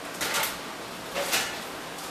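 Two short scraping, clattering noises about a second apart as a baking sheet is pulled out and handled.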